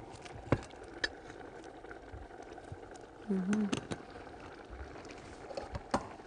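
A few light clicks and knocks of crockery and utensils being handled, a ceramic serving plate among them, over a faint steady hiss. A short murmur of a voice comes about three seconds in.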